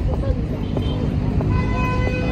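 Outdoor street ambience: a steady low rumble of passing traffic with faint voices of passers-by, joined about one and a half seconds in by a steady held tone.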